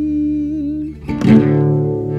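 Instrumental passage of a slow folk song: a held guitar chord fades, and a new chord is struck about a second in and rings on.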